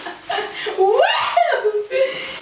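Women laughing, one voice gliding sharply up in pitch about a second in.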